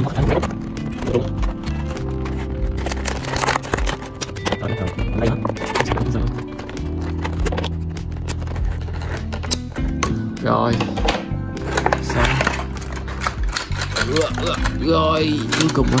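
Background music with a steady, blocky bass line, over short clicks and rustles of a figure being worked free of its plastic packaging, with a few murmured words near the end.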